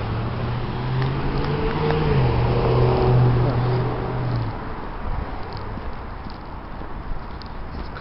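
A vehicle passing on the wet street: a steady engine hum over a hiss that drops in pitch about two seconds in and fades out after about four and a half seconds.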